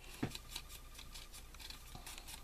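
Faint, quick scratchy rubbing of a foam ink-blending tool dabbed and dragged along the edge of a cardstock spiral, with paper rustling between strokes and a soft tap about a quarter second in.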